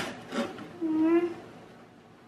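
Cardboard pet carrier flaps being pulled open, scraping and rustling in short strokes, then a short held "ooh" from a child about a second in.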